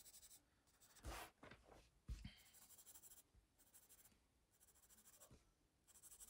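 Faint scratching of a pencil on sketchbook paper in a run of short strokes, colouring in every other square of a checkered pattern. A couple of soft knocks come about one and two seconds in.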